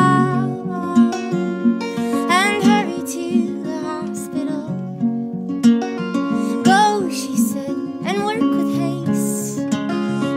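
A woman singing a slow folk song over two guitars. Her sung phrases come and go between sustained guitar notes.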